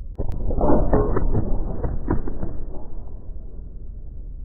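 Heavily muffled, rumbling noise from a sample-based ambient music track, with everything above the low and middle range cut away. It swells suddenly about a quarter second in and carries a few soft knocks.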